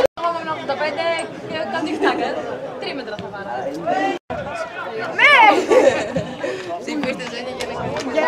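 Several men's voices talking and calling out across a football pitch during play, with one loud shout about five seconds in. The sound cuts out briefly twice.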